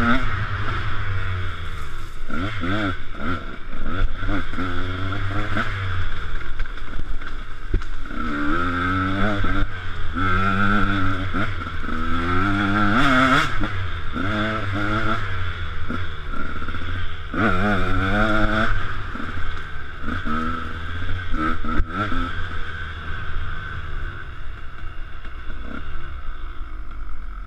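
KTM 125 SX's single-cylinder two-stroke engine revving up and dropping off over and over as the bike is ridden hard through gears, heard from a helmet camera. A few sharp knocks from the bike over rough ground come through along the way.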